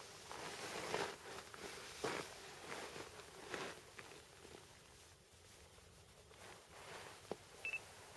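Faint rustling and handling noise with scattered soft clicks, quieter after about four seconds. Near the end comes a short, high double electronic beep.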